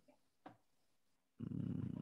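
A faint click, then from about one and a half seconds in a low, buzzy man's hum, a thinking "mmm" before he speaks again.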